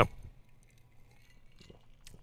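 A drinking glass clinking faintly a few times as it is sipped from and lowered.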